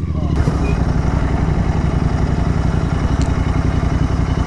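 Royal Enfield Continental GT 650's parallel-twin engine running steadily as the motorcycle is ridden along.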